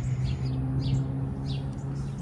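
Small birds chirping, short repeated calls about every half second, over a steady low hum.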